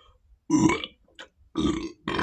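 A man burping twice, short loud belches about half a second and a second and a half in, after swigs of malt liquor.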